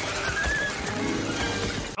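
Film soundtrack of a creature attack: music under a dense rush of effects, with short animal-like cries from the swarming fantasy creatures.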